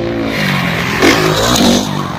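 Motocross dirt bike engine revving, its pitch dropping and climbing as the throttle is worked, getting louder about a second in.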